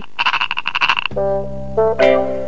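Cartoon frog croak sound effect, a rapid rattling croak lasting about a second. Sustained keyboard music chords start about a second in.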